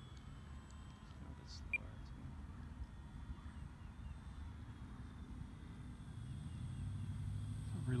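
Faint hum of an E-flite PT-17 radio-controlled biplane's electric motor flying at a distance, growing louder near the end as the plane comes closer, over a low steady rumble.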